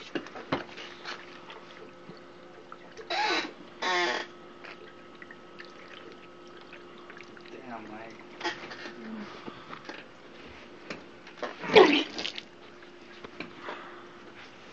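A person trying to chug a drink, with liquid sounds and a few short voiced outbursts, the loudest near the end. A steady hum runs underneath.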